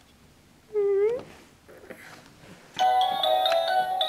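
An electronic baby toy, a musical toy elephant, starts playing a bright, beeping melody near three seconds in. About a second in there is a short, high, rising squeal.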